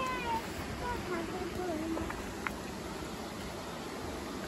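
A young child's high-pitched wordless voice: a few short calls that bend up and down in pitch over the first two seconds, over a steady background hiss, with a small click about two and a half seconds in.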